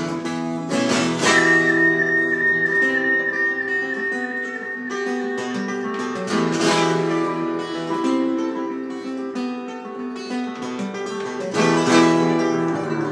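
Acoustic guitar strummed and picked in an instrumental passage, with hard chord strokes about a second in, midway and near the end. A single high tone is held over the first few seconds.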